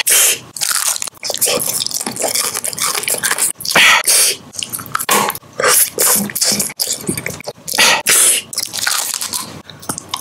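Close-miked biting and crunching of hard candy, a quick, irregular string of sharp crunches with chewing between them.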